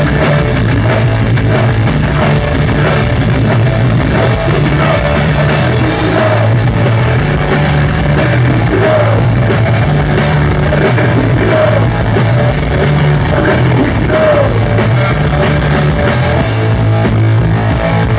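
Live punk rock band playing loud and steady: drum kit, bass guitar and distorted electric guitar, with the bass line moving between notes.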